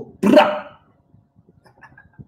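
A man's single loud, short exclamation of about half a second, the word "cool" in a playful voice, followed by quiet with only faint small sounds.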